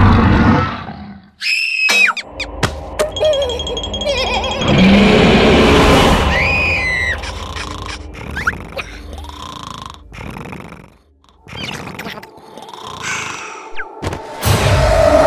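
Cartoon soundtrack with no dialogue. A larva character gives a loud wordless roaring yell in the first second or so, followed by a busy run of comic sound effects with squeaky sliding tones, over background music.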